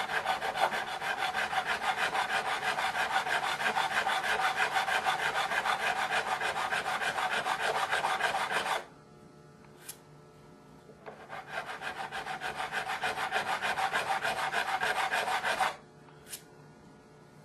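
Fret file rasping back and forth over a guitar's metal fret wire in quick, even strokes, rounding off the flat top of the fret (recrowning). The filing stops about nine seconds in, with one small click during the pause, then resumes about two seconds later and stops again just before the end.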